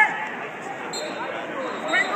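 Indistinct voices of coaches and spectators talking and calling out in a gymnasium, with no single clear sound standing out.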